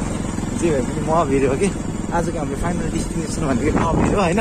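People talking over a motorcycle engine running steadily at low speed on a rough dirt track.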